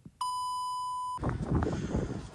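Censor bleep: a steady beep tone near 1 kHz lasting about a second, covering a spoken word. Once it cuts off, a low, noisy background of outdoor sound follows.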